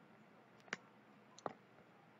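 Two sharp computer mouse clicks, the first under a second in and the second about three-quarters of a second later, over faint room tone.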